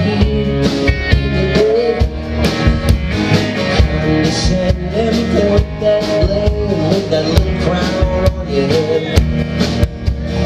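Live rock band playing an instrumental passage: a drum kit keeping a steady beat under electric and acoustic guitars, with a melodic line bending in pitch above them.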